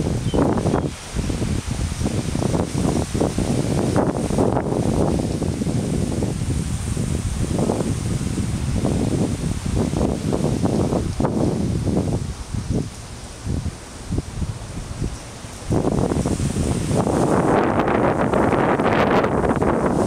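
Wind gusting on the microphone, with leaves rustling in the breeze. The gusts ease off for a few seconds past the middle, then pick up stronger near the end.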